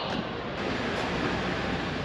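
Steady rushing wind noise outdoors, buffeting the camera microphone.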